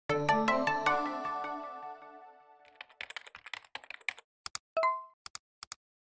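Channel intro jingle: a run of about five quick ringing musical notes that fade away over the first two seconds or so, followed by a patter of sharp typing-like clicks with one short tone among them.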